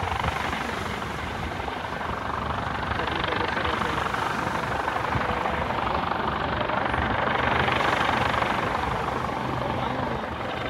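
Coast Guard MH-65 Dolphin helicopter flying low overhead: a steady rotor and turbine noise that grows a little louder about eight seconds in.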